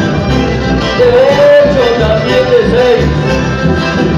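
Live chamamé band playing: accordion and bandoneón carrying a melody over electric bass and acoustic guitar.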